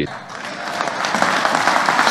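Audience applauding, growing louder over the two seconds.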